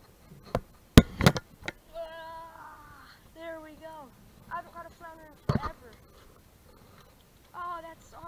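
A few sharp knocks, the loudest about a second in and another about five and a half seconds in, with short wavering voice-like notes, hummed or sung without words, between them.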